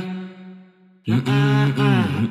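Deep, chant-like vocal holding long notes as part of the song's intro. One phrase fades out, and another starts about a second in.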